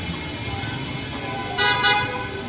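A car horn sounds two short honks in quick succession near the end, the loudest thing here, over music playing and the noise of cars moving past.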